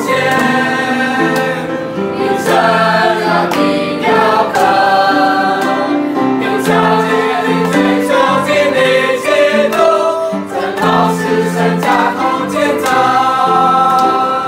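A mixed group of young men and women singing a Chinese hymn together, the voices holding long notes in chords.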